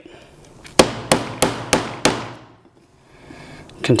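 Dead blow hammer striking the top of a stainless steel pump plunger five times in quick succession, about three blows a second, driving the plunger down into its metal piston cap.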